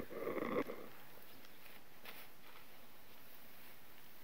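A brief voice-like call, about half a second long, right at the start, then faint, scattered rustling of hay being forked onto a haystack with wooden pitchforks.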